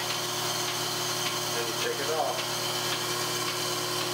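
Milking machine running steadily during milking: the vacuum pump's motor hum with faint clicks from the pulsator now and then.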